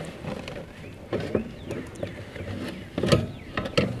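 A metal baking pan being handled and slid out over the wire rack of a solar oven, giving a few light knocks and clinks, the sharpest about three seconds in.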